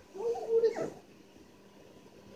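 A puppy giving a short, wavering attempt at a howl, under a second long near the start.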